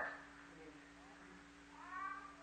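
Quiet pause in an old sermon recording: a steady low hum under faint hiss, with the tail of a man's voice at the start and a faint rising voice near the end.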